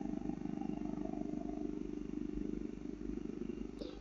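A steady low hum with a fine rapid flutter, the kind of background drone a desktop microphone picks up from a computer or room, with one faint click near the end.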